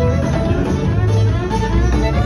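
Lively band music: a violin played over guitar and a strong bass line.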